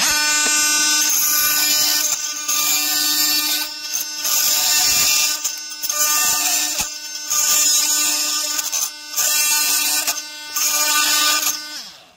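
Oscillating multi-tool at its highest speed setting, with a resharpened Diablo carbide blade, cutting through hard drywall screws in a wooden board: a loud steady high buzz with gritty cutting noise over it. It breaks off briefly several times as the blade is worked, then stops just before the end.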